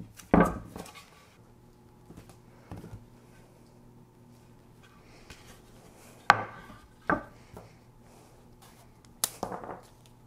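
Yellow low-tack painter's tape being handled on wooden paddles: a few sharp knocks and short rasps as tape is pulled off the roll, wrapped around a paddle handle and pressed down, and the wood is moved on the table. The sharpest knocks come just after the start and about six seconds in.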